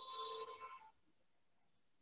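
A short electronic chime of several steady tones sounding together, ending about a second in.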